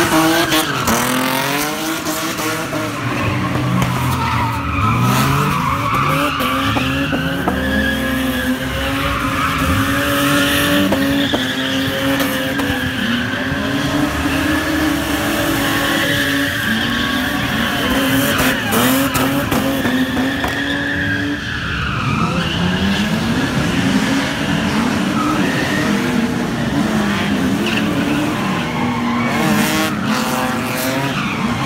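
Drifting cars with engines revving hard, their pitch rising and falling again and again, while the tyres squeal and skid through long slides.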